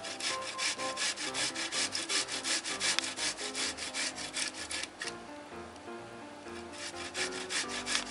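Cooked beets being grated on a coarse metal box grater: quick, even rasping strokes, about six a second. The strokes stop for about a second and a half a little past the middle, then start again.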